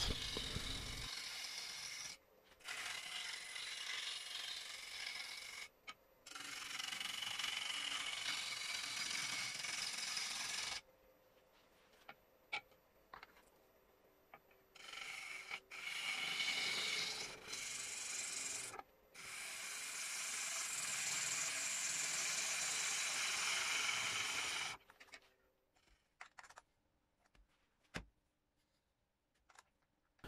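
A 13 mm (half-inch) 45-degree bowl gouge taking finishing cuts on a spalted birch bowl blank spinning on a lathe: the scraping of shavings peeling off the wood, in stretches of a few seconds with short breaks. The cutting stops near the end, leaving a few light clicks.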